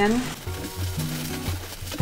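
Bubble wrap crinkling as it is stuffed down into a cardboard shipping box, over background music with a low bass line that steps from note to note.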